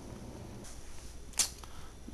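Low steady hum with a single short, sharp click-like swish about a second and a half in.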